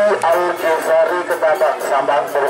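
Saronen band music: a wavering, reedy melody over a steady run of quick drum beats, with a man's voice announcing over a loudspeaker.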